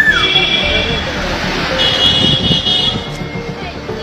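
Street traffic as a convoy of SUVs drives past, with a vehicle horn sounding twice. The first blast comes just after the start and the second about two seconds in, each about a second long.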